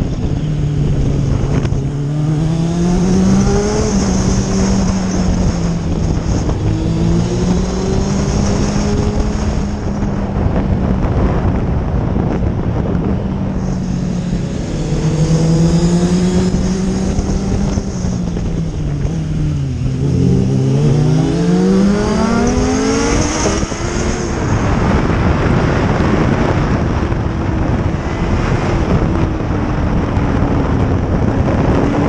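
Motorcycle engine running under way, its pitch rising and falling with throttle and gear changes, with a deep drop about 20 seconds in and a climb straight after. Wind rushes over the microphone throughout.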